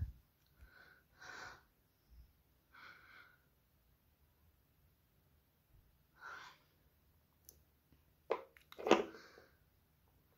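Soft breaths close to the microphone every couple of seconds, then a sharp, louder burst of breath near the end.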